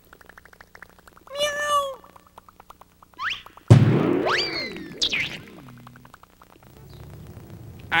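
Cartoon sound effects of a kitten bouncing on a trampoline. A quick run of light clicks and a short cat meow come first. Then, about halfway in, a loud sudden springy boing with a fast rising whistle is heard as the kitten is flung back up, fading out over a couple of seconds.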